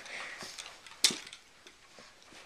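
Faint rustling and light ticks from a pug moving on a rug with a plush toy, with one sharp click about halfway through.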